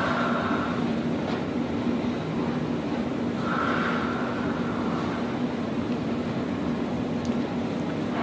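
Steady motor hum from a motorized traction unit on a chiropractic table, holding one low tone, with a faint higher whine coming and going about three and a half seconds in.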